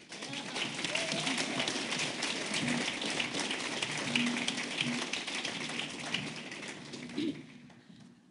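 Audience applauding, the clapping dying away near the end, with a few voices under it.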